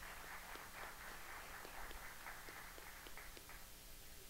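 Faint audience applause, a dense patter of hand claps that dies away about three and a half seconds in.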